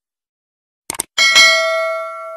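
Sound effects of a subscribe-button animation: a mouse-click double tick about a second in, then a bright notification bell ding that rings on and slowly fades.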